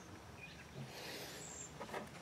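Faint outdoor background noise with a single brief, high bird chirp about three-quarters of the way through.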